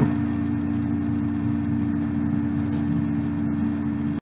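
A steady low hum with two held tones over a faint hiss, unchanging throughout.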